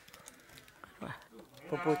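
A person's voice in a quiet room: a short low vocal sound sliding down in pitch about a second in, then speech near the end, with a few faint clicks before it.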